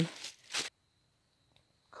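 A short rustle about half a second in, then dead silence for over a second.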